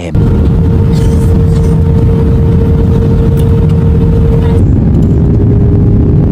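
Airliner cabin noise on the landing approach: a loud, steady rumble of jet engines and rushing air, with a steady hum that fades about four and a half seconds in.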